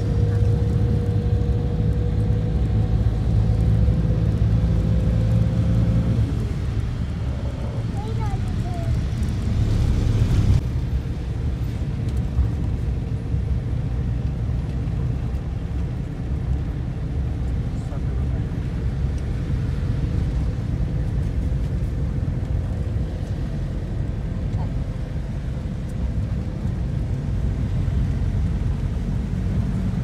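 Cabin noise inside a moving Toyota van: a steady low engine and road rumble. A steady whine stops about six seconds in, and there is a brief louder rush about ten seconds in.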